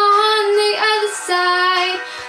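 An eleven-year-old girl singing into a microphone, holding long notes and changing pitch a few times.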